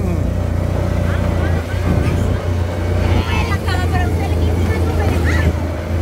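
Small motorcycle engine running steadily, heard from on the bike, with brief shouts of voices in the middle and near the end.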